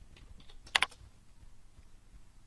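Computer keyboard keystrokes: a few light taps, then two sharper clacks in quick succession just under a second in.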